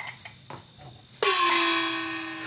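A few light clicks, then about a second in a sudden cymbal-like crash over a ringing held note that dies away slowly: a comedy sound-effect sting laid over the action.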